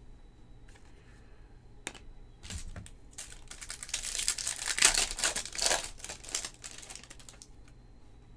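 Foil wrapper of a 2019 Topps Chrome card pack being torn open and crinkled: a few light clicks, then a dense run of crackling from about two and a half seconds in until shortly before the end.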